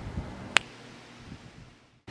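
Faint steady background hiss with one sharp click about half a second in, fading out toward the end.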